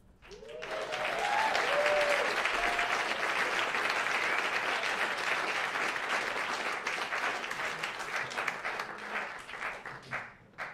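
Club audience applauding, with a few whooping calls in the first few seconds; the clapping thins out near the end.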